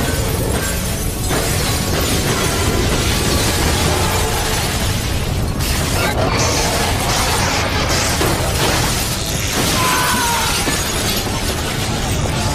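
Film sound effects of skyscrapers collapsing in an earthquake: a continuous loud rumble of crashing debris with shattering glass, under a musical score.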